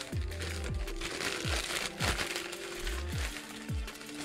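Paper crumpling and rustling as dirty hands are wiped with it, over background music with a steady beat of deep bass notes that drop in pitch.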